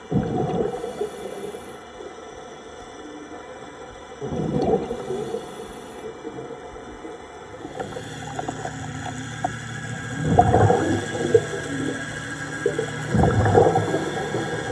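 Scuba divers' exhaled bubbles bursting from the regulators in four surges, heard underwater, over a steady, many-toned hum. About eight seconds in a lower hum joins, from the Atlantis tourist submarine's thrusters running close by.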